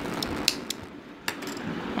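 Small spring-loaded thread snips cutting cotton yarn: a few sharp clicks, the loudest about half a second in and again just past a second.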